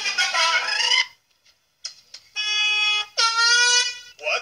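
Mariachi band music with trumpets and guitars, cutting off about a second in. After a short silence come two loud, steady held tones, each under a second long.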